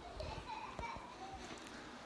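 Faint children's voices in the background.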